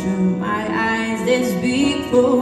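A woman singing live with instrumental accompaniment, holding long notes that slide in pitch.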